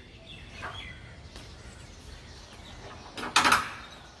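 Faint birds chirping over steady outdoor background noise, with one short loud noise a little past three seconds in.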